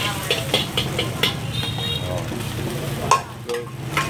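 A metal ladle scraping and clicking against a carbon-steel wok as eggs sizzle in hot oil, over a steady low rumble from the jet burner. There is a sharp knock a little after three seconds in.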